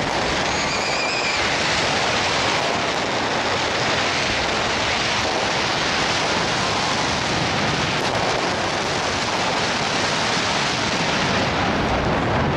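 Fireworks going off overhead in a dense barrage, the bursts and crackle merging into one continuous, steady wash of noise, with a brief whistle about a second in.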